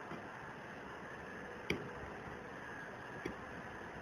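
Quiet steady background hiss with two short faint clicks, the first a little under two seconds in and the second about a second and a half later.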